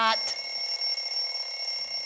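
An alarm ringing with a steady, high-pitched tone that cuts in suddenly; the alarm signals that play time is over.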